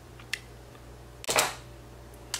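Mouth sounds from lips pressed together over freshly applied lip gloss: a faint click, then a louder short lip smack about a second and a half in.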